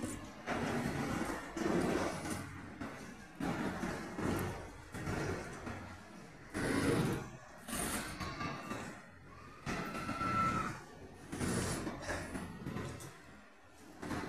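Covered freight wagons of a DB Cargo train rolling past at speed, with a rumble and a regular clatter of wheels over the rail joints about every second and a half. Around the middle a brief high squeal sounds over the clatter for a couple of seconds.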